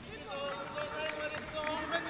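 Speech, with a voice talking over the steady background noise of an arena.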